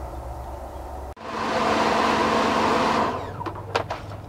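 High-pressure washer spraying water onto a wrought iron pot plant holder and concrete for about two seconds, a steady hiss over the machine's low hum, then the spray stops. A few sharp knocks follow near the end.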